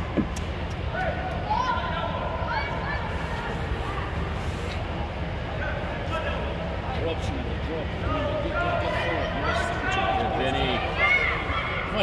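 Players and sideline spectators shouting and calling out during a youth soccer game, many short calls at a distance, over a steady low hum; a few sharp knocks, as of a ball being kicked, cut through.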